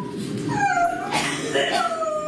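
A loud, high wailing cry standing in for the baby, its pitch sliding down and then up and down again.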